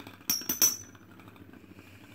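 Two metal-wheeled Beyblade tops clash twice with sharp metallic clinks, the first briefly ringing, then keep spinning with a faint rattling whir on the plastic stadium floor as they lose spin late in a stamina battle.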